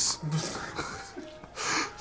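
A quiet pause between voices: a short voice sound just after the start, then a breathy exhale near the end that turns into a laugh.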